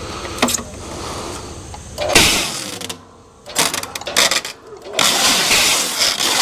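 Brute Force firewood bundler wrapping stretch film around a bundle of split firewood: the wrap ring turns the film roll around the bundle in several spurts, run by a foot pedal, with the film rustling as it pulls off the roll.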